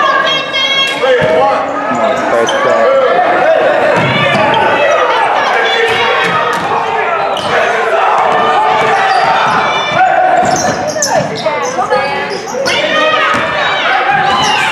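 A basketball dribbled on a hardwood gym floor during live play, under the shouting voices of players and spectators, with the echo of a large gym.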